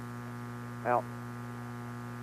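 Steady electrical mains hum in the radio broadcast audio, a buzz with many overtones, with a single spoken word from the announcer about a second in.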